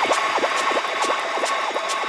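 Electronic dance track in a stripped-down breakdown with no bass: rapid short synth blips that each fall in pitch, over steady ticking hi-hats.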